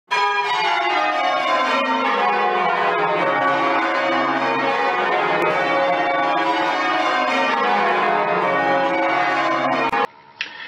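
A ring of church bells change ringing: many bells struck one after another in quick succession, their tones overlapping and hanging on. The ringing cuts off suddenly just before the end.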